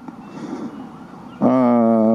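A man's voice through a microphone: a short pause with faint background noise, then a long, level-pitched "eh" hesitation about a second and a half in.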